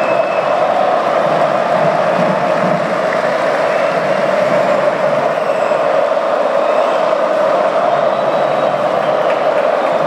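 Large basketball crowd cheering in a packed indoor arena: a loud, steady wall of many voices with no let-up.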